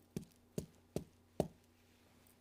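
A pen tapped four times on a desk top, evenly spaced at about two and a half taps a second.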